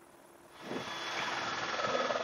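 Helicopter noise heard from inside the cabin, fading in from near silence about half a second in and growing steadily louder.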